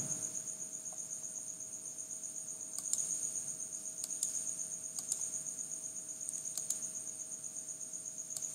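Crickets chirping in a continuous high trill, with a few sharp computer mouse clicks in the second half.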